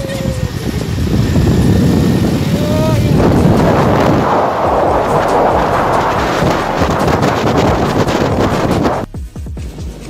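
Wind rushing over the microphone with motorcycle engine and road noise while riding along at speed, plus a short pitched call or horn-like tone about three seconds in. The noise drops off abruptly about nine seconds in.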